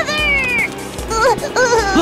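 A small child's voice crying in high-pitched wails: a long wail that falls in pitch over the first half-second, then shorter sobbing cries in the second half, over background music.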